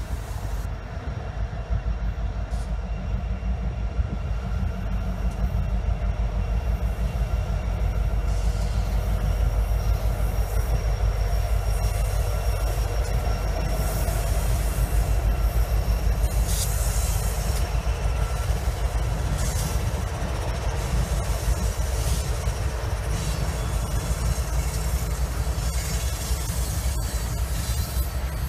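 BNSF freight train rolling past, its diesel locomotive and freight cars making a steady, heavy low rumble. Thin high wheel squeal runs through it, with a few brief sharp clanks.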